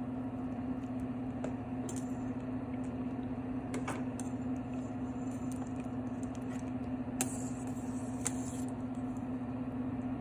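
Steady low hum from a kitchen appliance, with a few light clinks of a metal spoon against the stainless steel soup pot.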